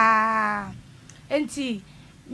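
A person's voice holding one long, drawn-out vowel at a nearly level pitch for just under a second, then a short falling syllable about a second and a half in.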